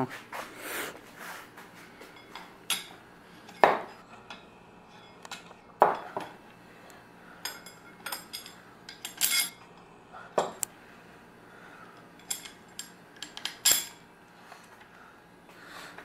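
Metal parts and hand tools clinking and knocking as they are handled and set down on a workbench: irregular light clinks with a few louder clanks spread through.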